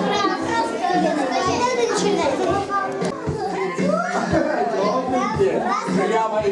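A group of young children chattering, laughing and exclaiming over one another, many voices at once without a pause.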